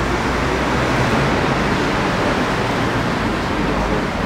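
Steady street traffic noise: a continuous wash of passing cars with a low rumble and no distinct events.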